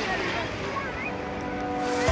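Sea surf and wind on the microphone, a steady rushing noise, with faint voices in the background. Steady musical tones fade in during the second half.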